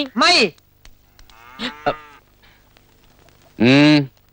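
A man's voice shouting short, loud, drawn-out calls: one just after the start, a fainter pair in the middle, and a loud one near the end.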